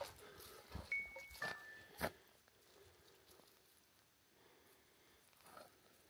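Quiet woods with a few soft steps on the trail. About a second in come two short, clear whistled notes, the second a little lower than the first.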